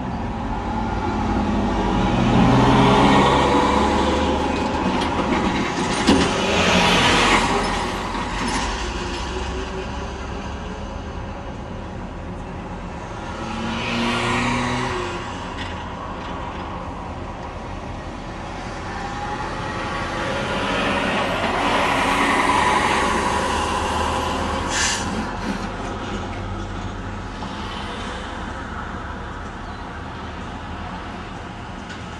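Heavy trucks' diesel engines swelling and fading as they pull through the toll booths, over the steady running of nearby vehicles, with a few short sharp sounds in between.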